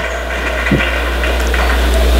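A steady low electrical hum on the broadcast audio that grows slowly louder, with the murmur of a gymnasium crowd underneath.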